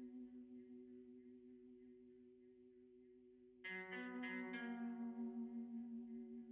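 Quiet background music: a held guitar note slowly fades, then a new plucked chord comes in a little past halfway and rings on.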